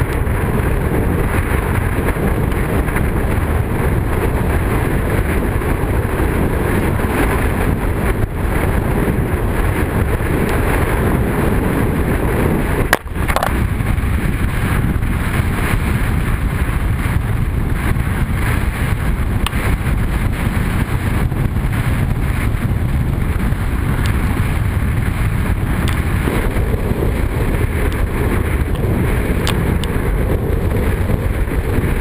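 Wind buffeting the microphone and water rushing past a kiteboard moving fast over choppy water, a loud, steady rush with a brief dip about halfway through.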